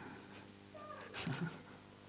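A short vocal call about a second in, falling in pitch, followed by a brief lower voice-like sound.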